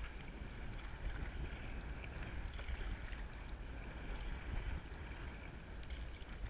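Steady wind buffeting a deck-mounted action camera's microphone, with sea water sloshing and splashing around a sea kayak's hull.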